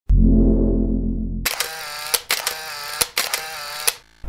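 Intro sound effects: a deep, low sustained chord for about a second and a half, then a brighter wavering tone broken by three sharp camera-shutter clicks.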